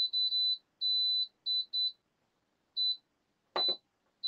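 Deluxe electric griddle and grill's control panel beeping as its buttons are pressed to set the temperature to 375 degrees. It gives a string of high single-pitch beeps of uneven length, some long and some short, with a gap in the middle and a brief knock near the end.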